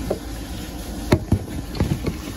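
Handling noise of a phone camera held against a wooden cabinet: a few short knocks, one about a second in, one soon after and one near the end, over a low steady rumble.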